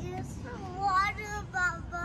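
A young child's high-pitched voice in several short wordless sing-song phrases that rise and fall in pitch.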